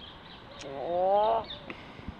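A goose gives one call of just under a second, rising in pitch, about halfway through, over faint high peeps from goslings.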